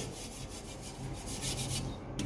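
Light rubbing and scraping, a quick run of faint scratchy strokes, as a hand brushes over the plastic shelf and walls inside a refrigerator's freezer compartment.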